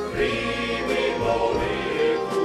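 Male choir singing a Rusyn folk song in full harmony, accompanied by a small folk ensemble with a steady low bass line underneath.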